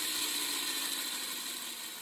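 A pair of 3D-printed PLA herringbone gears turning in mesh on their shafts, spun by hand: a soft, steady whir that fades slowly as they spin down, running quietly and smoothly.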